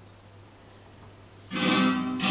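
Quiet room hum, then about a second and a half in a recorded flamenco guitar starts abruptly, played back over loudspeakers.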